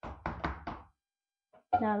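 Four quick knocks against a plastic mixing bowl within the first second, as a hand works seasoning paste in it. A voice speaks briefly near the end.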